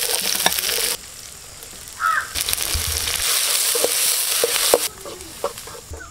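Chopped onions frying in hot oil in a pan, a steady sizzle that breaks off about a second in, comes back for a couple of seconds and drops away near the end. A short bird call about two seconds in.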